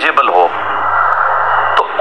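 A man speaking, then a long, even breathy hiss for a little over a second before his speech resumes.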